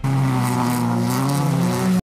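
Car engine running under load as the car drives toward the camera, its pitch climbing near the end, then cutting off suddenly.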